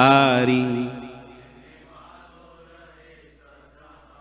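A man chanting a devotional verse, holding its last note for about a second before it fades away, leaving only a faint low hum.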